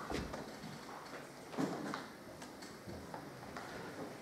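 Faint, scattered clicks and taps of a paintbrush working in a watercolour palette while mixing paint.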